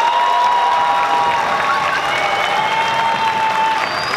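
Audience applauding and cheering at the end of a massed student string orchestra's piece, with a few long held tones over the clapping.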